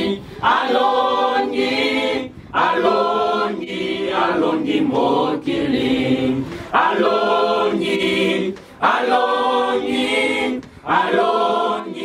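A small church choir of young voices singing a worship song together, in phrases of about two seconds with short breaks for breath between them.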